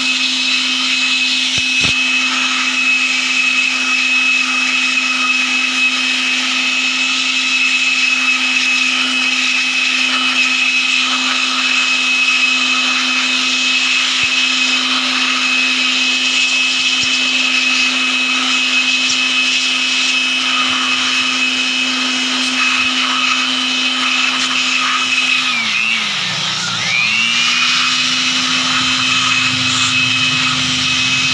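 Handheld electric blower running steadily with a high whine, drying a freshly washed-out screen-printing screen. About 26 seconds in, its pitch dips briefly as the motor slows, then recovers.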